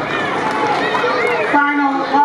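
Spectators' voices in the stands, several people shouting and talking over one another, with one voice calling out loud and drawn-out about a second and a half in.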